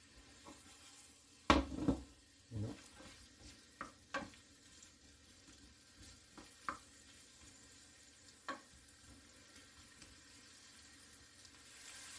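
Diced onions frying in a pan with a faint sizzle, while a wooden spoon stirs them and knocks against the pan several times, loudest about a second and a half in.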